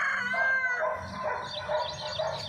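Background animal calls: a long, drawn-out call that ends about a second in, followed by a run of quick, high chirps.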